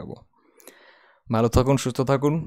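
A man's speech with a short pause holding a single faint computer mouse click.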